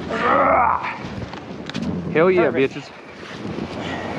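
Ski-Doo Summit snowmobile stuck in deep powder, its engine running under throttle as the rider works it free, with a loud burst in the first second. A short vocal shout or grunt comes about two seconds in.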